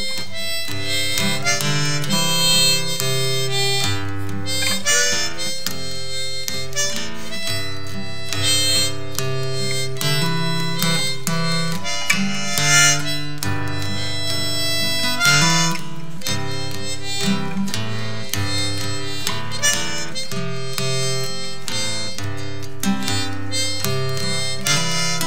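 Harmonica and acoustic guitar playing the closing instrumental passage of a folk song, the harmonica carrying the melody over steady guitar picking.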